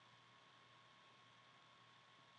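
Near silence: room tone with a faint steady hiss and a thin high hum.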